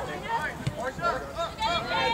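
Only speech: spectators' voices talking in the background, none of it clear enough to make out.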